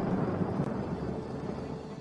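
Large ocean waves breaking: a steady roar of surf that slowly fades.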